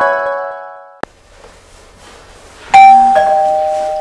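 Two-tone doorbell chime, a higher ding and then a lower dong, about three-quarters of the way through. Before it, the tail of a rising keyboard flourish fades out and a single click is heard about a second in.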